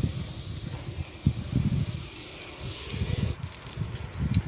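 Russell's viper giving a long, steady defensive hiss that stops about three and a half seconds in, with low rumbling underneath.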